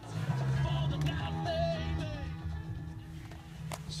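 Music with singing from a car radio, starting as the ignition key is turned, over a steady low hum. It gets quieter past the middle.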